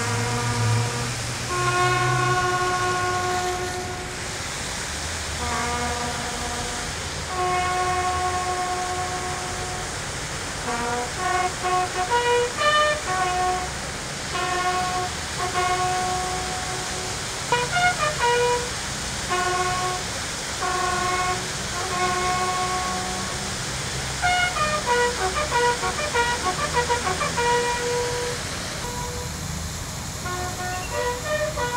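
A solo bugle playing a slow ceremonial call: long held notes, with quicker runs of notes from about a third of the way in, sounded while the ranks hold their salute.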